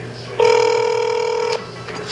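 A telephone ring tone: one steady electronic tone about a second long, starting about half a second in, over a low steady hum.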